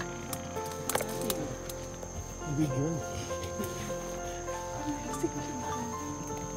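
A steady high-pitched drone of forest insects, with soft background music of held notes and a short voice-like sound about two and a half seconds in.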